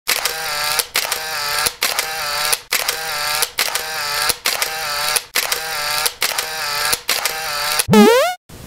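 A short pitched sound clip repeated about once a second, nine times in a row, ending in a quick rising glide: an edited-in soundtrack loop laid over the intro.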